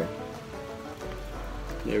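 Steady hiss of rain falling, with faint music underneath.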